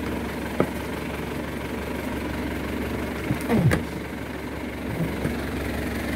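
An engine running steadily at idle, a low even hum, with a single click about half a second in.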